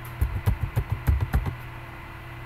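Computer keyboard typing: a quick run of about eight keystrokes over a second and a half, over a steady low electrical hum.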